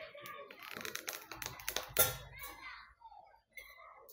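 Quick light clicks and taps from handling tools and fabric on a cutting table, with one sharper click about two seconds in, then quieter.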